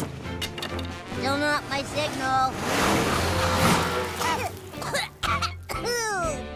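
Cartoon soundtrack of music and characters' voice sounds, with a rushing noise lasting about two seconds in the middle, the loudest part.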